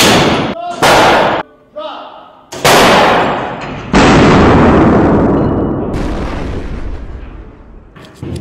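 Potato gun firing: four loud blasts, the last about four seconds in, dying away slowly over the next few seconds.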